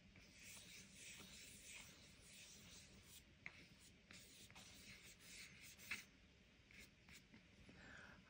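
Faint swishing of a flat paintbrush stroking wet watercolour paint around on watercolour paper, in soft repeated strokes with a couple of light taps.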